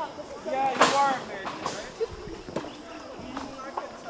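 Indistinct voices of a group of people, loudest in a short burst about a second in, then faint talk with a few light ticks.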